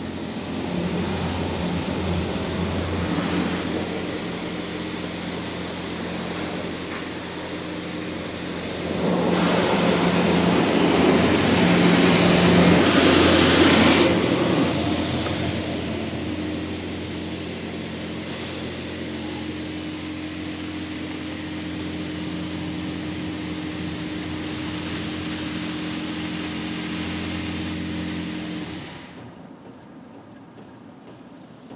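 Magic Wand NEXUS automatic car wash spraying water onto the car, heard from inside the cabin: the hiss of spray on the body and glass over a steady machine hum. The spray swells loudest for several seconds around the middle as the spray arm passes close, then drops away near the end.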